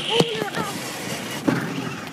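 A person's voice making brief sounds, with two knocks: one just after the start and one about a second and a half in.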